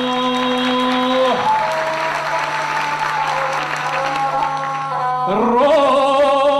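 Single-string gusle bowed under a man's epic singing: a long held sung note ends about a second and a half in, then audience applause runs for several seconds over the gusle's steady tone, and the voice comes back in with a rising slide near the end.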